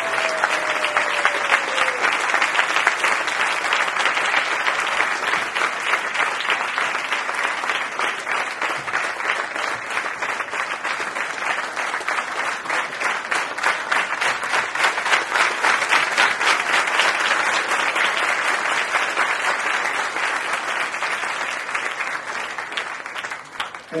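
A large audience applauding, many hands clapping in a dense, steady patter that thins out near the end.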